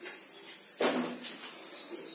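Cricket chirring steadily in a continuous high-pitched band, with a single sharp knock a little under a second in.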